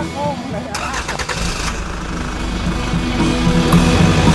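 A motorcycle engine starting with a sudden burst about a second in, then running, under rock music that grows louder; a voice is heard briefly at the start.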